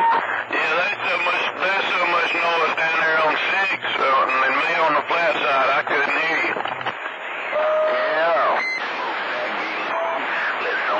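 A voice talking over a CB radio receiver on channel 28, a long-distance skip signal.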